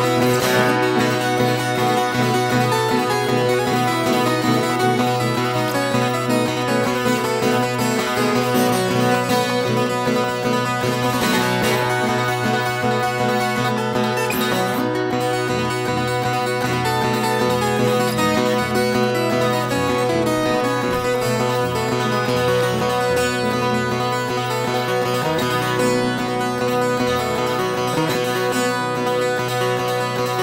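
Ten-string viola caipira picking an instrumental melody over acoustic guitar accompaniment, a bright, steady run of plucked notes.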